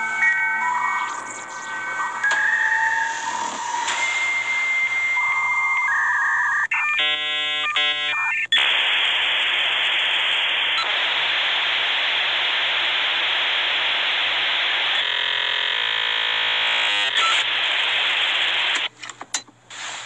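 Dial-up modem handshake: a run of shifting steady tones, a short stuttering burst of stacked tones about seven seconds in, then a long loud hiss of static from about eight and a half seconds that breaks off near the end.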